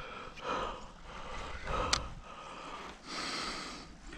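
A man breathing close to the microphone: three audible breaths about a second and a half apart, with a single sharp click about two seconds in.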